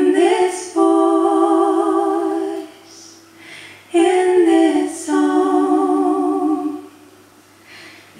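A woman singing unaccompanied, in two long phrases of held, wavering notes, with a breath between them about three and a half seconds in.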